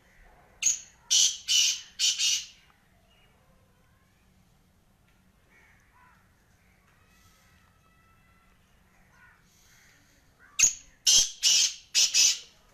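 Black francolin calling twice, about ten seconds apart: each call is a loud, harsh phrase of a short first note followed by three longer rasping notes.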